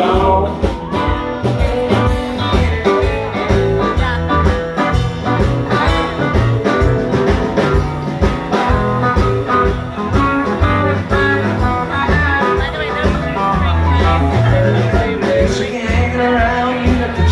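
Live rock band with electric guitars, electric bass, keyboards and drums playing an instrumental stretch of a jam. The recording is made from the audience in a club.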